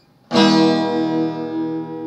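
Cutaway acoustic guitar: a chord strummed about a third of a second in, left ringing and slowly fading.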